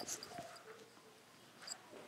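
Near silence: faint room tone with a few faint short sounds and a brief click near the end.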